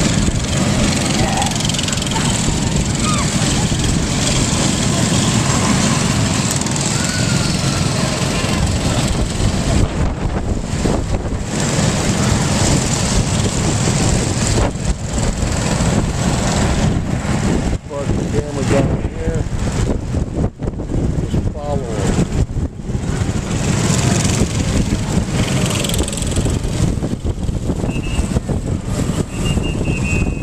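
Several small go-kart engines running as karts lap the track, a continuous drone that swells and dips a little as they pass.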